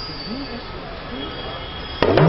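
Yoruba talking drums played softly: a few faint pitch-bending drum tones over a background hiss, with a thin steady high whine.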